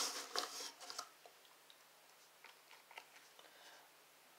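Faint crinkling and clicking of handled plastic packaging during the first second, then near silence with a couple of faint ticks.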